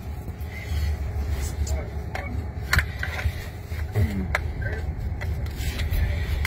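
Steady low road and tyre rumble inside the cabin of a Waymo Jaguar I-Pace electric robotaxi as it drives, with no engine note. A few light clicks and rubs sound over it, and a brief murmur of voice comes about four seconds in.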